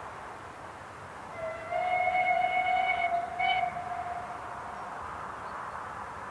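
The steam whistle of SDJR 7F 2-8-0 No. 53808 sounds one long blast of about three seconds, starting about a second and a half in, with a brief break in its upper notes shortly before it fades. A faint steady rush of the approaching train lies underneath.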